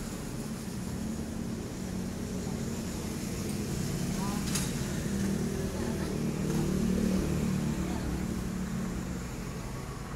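A vehicle engine idling, a steady low hum, with a single sharp click about halfway through.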